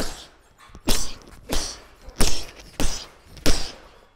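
Boxing gloves striking a hanging Geezers heavy punch bag, six power punches in a row, about one every two-thirds of a second, each a sharp thud.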